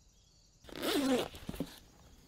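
Backpack zipper pulled open in one quick stroke about half a second in, followed by a couple of light clicks as the bag is searched.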